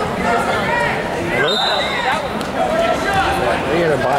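Overlapping shouting voices of spectators and coaches in a gymnasium during a wrestling bout, with a short high steady tone about halfway through.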